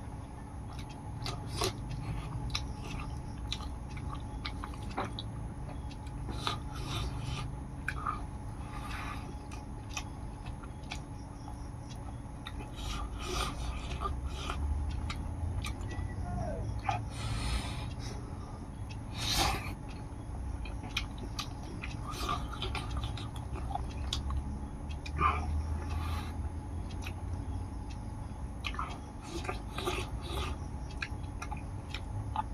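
Close-miked eating by hand: chewing and mouth sounds from rice and chewy buffalo skin, with many short sharp clicks from fingers and food against a steel plate.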